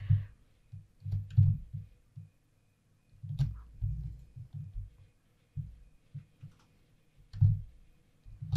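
Computer mouse being clicked and handled on a desk near the microphone: irregular soft low thumps, about a dozen over several seconds, with a few sharp clicks.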